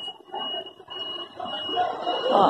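Busy-sidewalk ambience: faint distant chatter from a crowd, with a high-pitched electronic beep repeating over it in short pulses.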